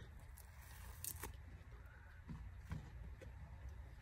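Faint handling noise of a silicone mold being flexed and peeled off a cured epoxy resin piece, with a few soft clicks over a low steady hum.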